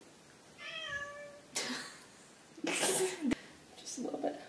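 A single meow, about half a second long, sliding slightly down in pitch, followed by two short breathy sounds, the louder one near three seconds in.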